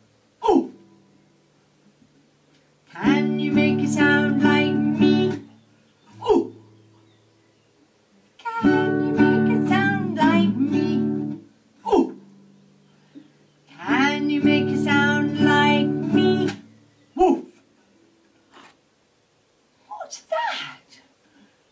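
Nylon-string classical guitar strummed in three short phrases, with a woman's voice singing along. Between the phrases come short falling vocal 'whoo' sounds, with quiet pauses in between.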